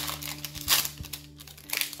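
Foil wrapper of a Magic: The Gathering booster pack crinkling as it is opened by hand, in three short bursts.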